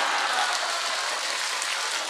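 Audience applause: many people clapping, a steady even patter.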